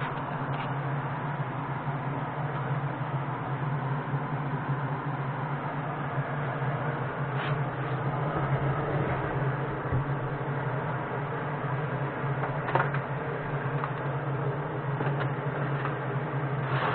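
A steady low machine hum runs throughout, with a few faint clicks of metal parts being handled.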